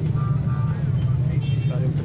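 Steady low rumble of an idling engine, a continuous hum with faint voices over it.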